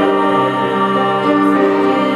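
Women's choir singing sustained chords in several-part harmony, the chord shifting a couple of times.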